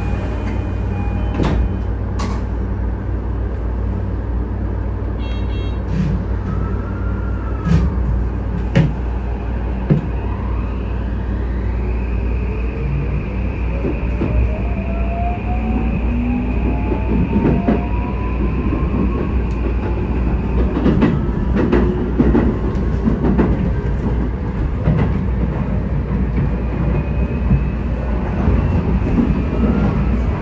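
Electric train running on rails, heard from inside the front car: a steady low rumble with scattered sharp clicks from the wheels and track. Around the middle, a motor whine rises steadily in pitch for several seconds as the train picks up speed.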